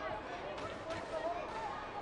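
Football stadium crowd ambience: a steady background murmur with scattered distant voices and calls.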